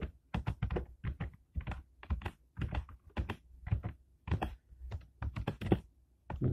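Typing on a computer keyboard: a string of separate keystrokes at an uneven pace, a few per second.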